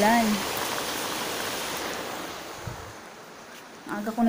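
Rain falling outside, a steady even hiss that fades away in the second half.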